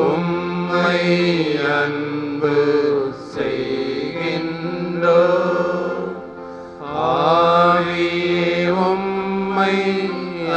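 A Tamil devotional adoration hymn being sung, with a voice moving in gliding, held notes over sustained musical accompaniment.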